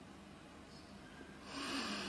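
Quiet pause with a faint steady hum, then about a second and a half in a short, soft intake of breath by a Quran reciter as he fills his lungs before the next phrase.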